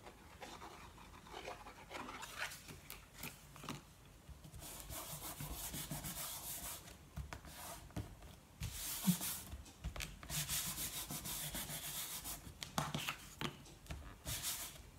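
Hands pressing and smoothing glued board panels down onto card stock: dry, scratchy rubbing of palms on board and paper in two longer stretches, about five seconds in and again about ten seconds in, with small taps and paper rustles between.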